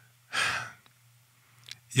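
A man's short sigh, one breath pushed out into a close microphone, about half a second long and starting about a third of a second in. A faint steady low hum sits under it, and there is a small click near the end.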